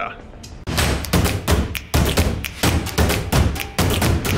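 Intro music sting for a logo animation: a run of heavy drum hits with deep booms, starting under a second in and going on at about two to three hits a second.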